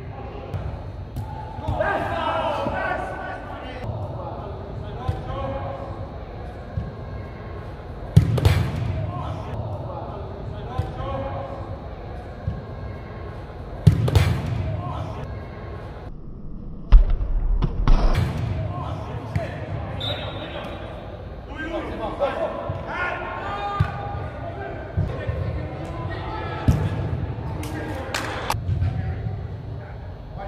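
Soccer ball being kicked on artificial turf in a large echoing indoor hall: a handful of sharp thuds spread out, the loudest just past halfway, each trailing off in echo, with players shouting between them.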